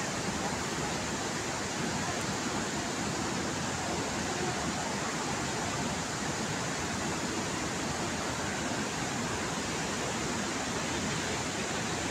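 Steady, even rushing noise that does not change, with no distinct events.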